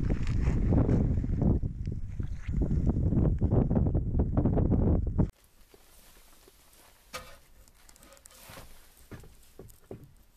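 Loud rumbling and crackling handling noise on the camera microphone outdoors, cut off suddenly about five seconds in. Then quiet room tone in a small room, with a couple of faint knocks.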